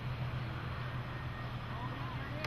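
A vehicle engine idling nearby: a steady low hum under an even outdoor background noise.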